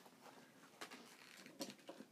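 Near silence: room tone with a few faint clicks about the middle and near the end.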